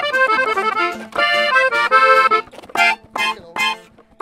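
Red Gabbanelli button accordion playing a norteño tune: a fast run of notes, then three short chords near the end as the piece finishes.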